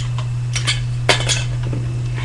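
Scissors snipping through thin aluminium soda-can sheet: a few short, sharp metallic snips between about half a second and a second and a half in, over a steady low hum.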